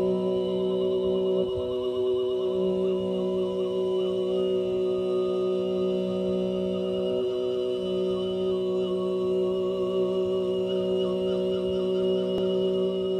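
Mongolian throat singing: a steady low drone with a higher, whistle-like overtone line wavering above it as a melody. The drone breaks off briefly about a second and a half in and again past the middle.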